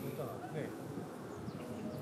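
Faint distant voices over steady outdoor background noise.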